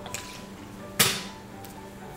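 A single sharp knock about a second in, over a faint steady background.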